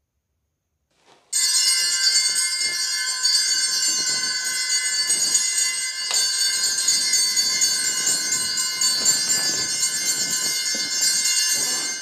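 A loud, steady high-pitched ringing made of many bell-like tones, starting sharply about a second in and cut off just before the end, with a single click in the middle.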